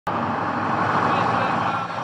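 Street noise: a motorcycle engine running close by, with the voices of a crowd mixed in, steady and loud throughout.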